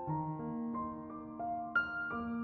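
Gentle, slow background piano music: single sustained notes entering one after another, with a brighter, slightly louder note near the end.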